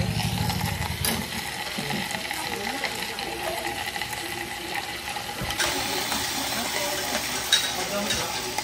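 Meat sizzling in a pan on a portable butane gas stove, stirred and turned with metal tongs, over background chatter. A low hum stops about a second in.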